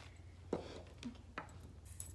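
Quiet handling noise: a few faint clicks and knocks as the blood pressure cuff is pressed and the phone is moved, over a steady low hum.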